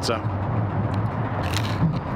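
A bite into a slice of crisp-crusted, pan-baked bar pizza: a short crunch about one and a half seconds in, over a steady low background rumble.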